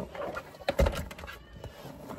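Handling noise from a car sun visor: a few short clicks and a dull knock about a second in as it is pushed and moved.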